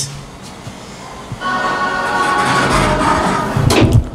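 Music: after a quieter first second and a half, a piece with several steady sustained tones comes in and grows louder toward the end.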